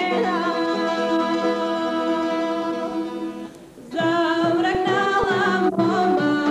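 A woman singing a Bulgarian folk song solo, accompanied by a folk band. She holds long notes, breaks off briefly about three and a half seconds in, then the singing and instruments carry on with a more ornamented line.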